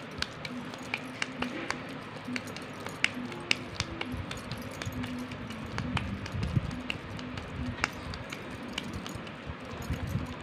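Hands pressing and patting raw minced chicken in a stainless steel bowl: soft handling noise with many small scattered clicks and taps.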